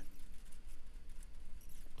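A quiet pause: faint steady low hum with a few light ticks near the end.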